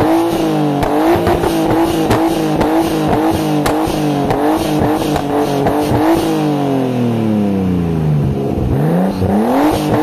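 Nissan Skyline R33 GTS-T's turbocharged RB25DET straight-six held at high revs with repeated exhaust pops and crackles; about six seconds in the revs fall away steadily for a couple of seconds, then climb sharply again near the end.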